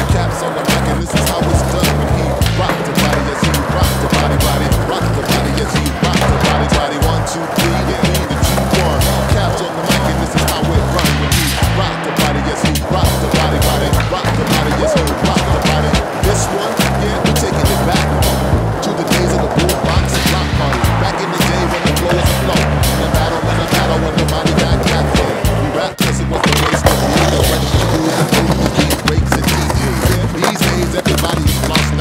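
Skateboard wheels rolling on smooth concrete, with the clacks of board pops and landings from flatground tricks, over music with a steady, heavy beat.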